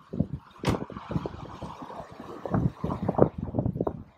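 Wind buffeting the microphone in irregular low gusts, with a single sharp click about three-quarters of a second in.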